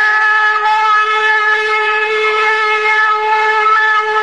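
A male Quran reciter holding one long, high, steady note on a drawn-out vowel: the extended madd of tajweed recitation.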